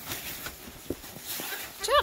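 Boerboel puppies moving about on a wooden deck: scattered light taps of paws and claws on the boards, with faint rustling of a nylon play tunnel.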